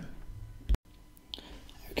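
Faint room hiss broken by one sharp click a little under a second in, followed by a moment of dead silence: an edit splice where the recording is cut between takes.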